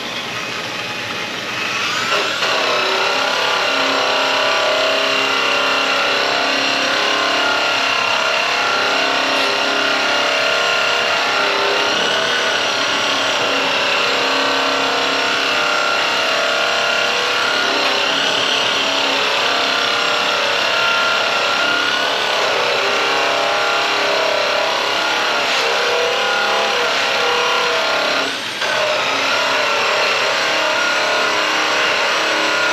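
Electric rotary polisher running steadily on the aluminum fuel tank and step box of a semi truck, a high motor whine that spins up about two seconds in and dips briefly near the end before picking back up.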